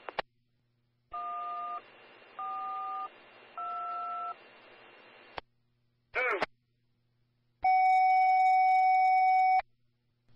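Railroad radio heard over a scanner: static hiss carrying three short two-note touch-tone (DTMF) beeps about a second apart, then the hiss cuts off. A brief chirp follows, then one loud steady tone lasting about two seconds.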